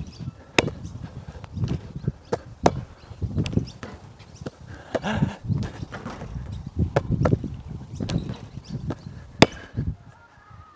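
A basketball bouncing off the backboard and rim and dropping onto a hard outdoor court during repeated close-range layups. It makes a string of sharp, irregular thuds and slaps, about one or two a second, and the loudest comes near the end.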